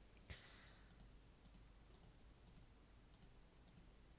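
Near silence broken by a few faint computer mouse clicks, with one sharper click about a third of a second in.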